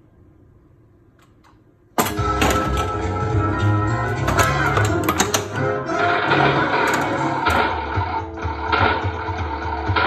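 A 1995 Bally Who Dunnit pinball machine playing its game music and sound effects through its speakers. After a couple of faint clicks, the sound comes in suddenly about two seconds in and stays loud, dense and busy, with sharp effect hits scattered through it.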